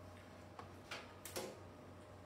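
A few short, soft clicks and knocks over a faint steady low hum.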